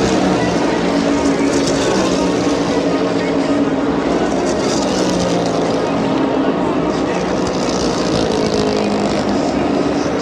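NASCAR Cup Series stock cars' V8 engines racing past in a pack, a steady drone whose pitch slowly slides as the cars go by. Crowd voices from the grandstand are mixed in.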